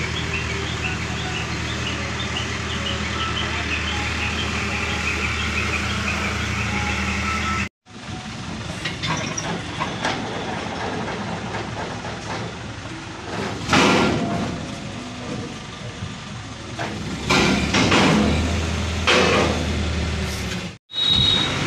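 ACE hydra mobile crane's diesel engine running steadily as it hoists a bundle of steel pipes in slings. After a break about eight seconds in, the engine continues with several louder rushes of noise in the second half.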